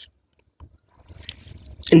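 A pause in a man's talking: near silence with a faint click, then a faint low rumble, before his voice starts again near the end.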